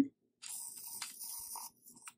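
An electric plasma arc lighter buzzing with a high crackling hiss for just over a second as its arc lights a candle wick, followed by a couple of faint clicks near the end.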